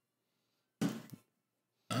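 Near silence, broken once just under a second in by a brief sound from a person's voice.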